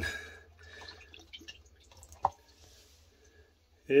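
Faint drips and trickle of water going down the drain hole in a front-loading washer's rubber door seal, flowing again now that the clogged drain tube has been cleared. One sharper tick comes a little after halfway.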